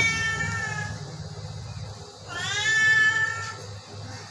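A sick Persian cat meowing twice: the tail of a long meow at the start, then a second long meow a little after two seconds in.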